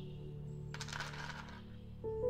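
Almonds poured from a clear scoop clattering into a compartment of a glass serving box, a brief rattling spill about a second in. Background music plays throughout.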